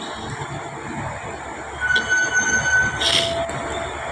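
Steady rumbling vehicle running noise with a few short, thin high squeals and a brief hiss about three seconds in.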